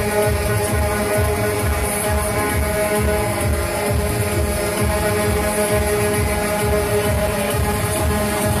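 Loud electronic music with a steady low beat and held tones.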